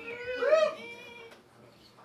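A short, high-pitched whoop of a voice that slides down and then arches up and down in pitch, loudest about half a second in, then fades away.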